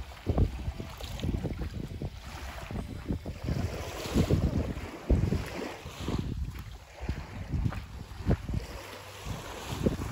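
Wind buffeting the microphone in uneven gusts, over the light wash of calm sea water at the shoreline.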